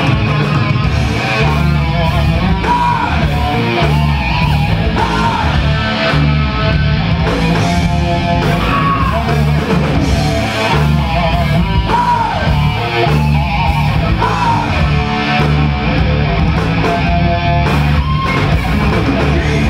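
Live heavy metal band playing loud: electric guitar and bass guitar over drums, with a male singer's voice carrying over the band.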